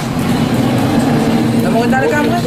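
A voice holding one long, steady hum-like sound over a constant background noise.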